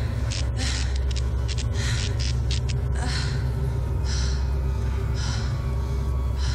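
Horror sound design: a low droning rumble under heavy, rhythmic breathing, one breath about every second. A quick flurry of sharp clicks crackles through the first half.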